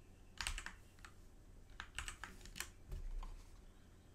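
Computer keyboard keys tapped in a few short clusters of sharp clicks, as a link is pasted into a web browser's address bar.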